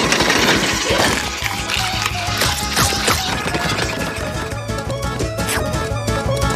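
Cartoon scuffle sound effects, a noisy jumble of clatters and knocks, over background music; the commotion dies down about three seconds in, leaving the music.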